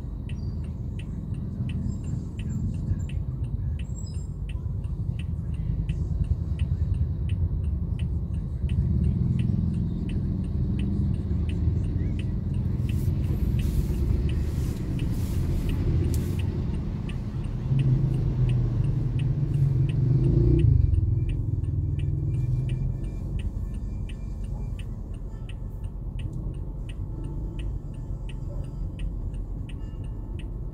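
Steady low rumble of a car idling and creeping in slow street traffic, heard from inside the cabin, with a faint regular ticking. About two-thirds in, a nearby engine grows louder for a few seconds, then fades.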